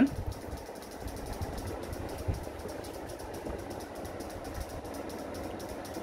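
A steady, low background rumble of running machinery, with no clear pitch.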